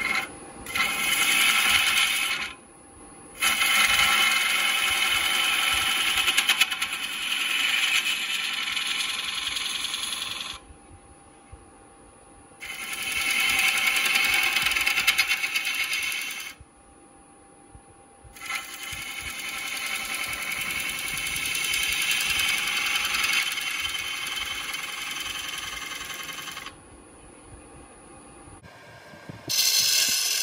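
Gouge cutting beads into a spinning ash spindle on a wood lathe: a loud hiss of the cut in several long passes of a few to eight seconds each, dropping to the quieter run of the lathe whenever the tool comes off the wood.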